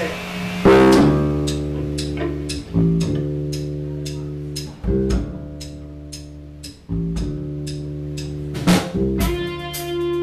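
Live rock band, electric guitar and bass guitar, starting up loud about a second in. Sustained chords change every two seconds or so over a steady tick about twice a second.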